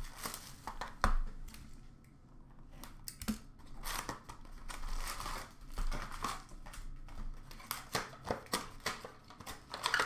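A sealed O-Pee-Chee Platinum hockey hobby box being torn open by hand and its foil packs pulled out: crinkling wrap and packs, with tearing and many short sharp clicks. A sharp knock about a second in is the loudest sound.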